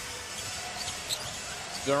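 Steady arena crowd noise from a basketball game, with a basketball being dribbled on the hardwood court.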